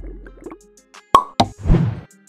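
Cartoon-style plop sound effects from an animated outro over light background music: two sharp pops a little past one second in, followed by a short rushing burst.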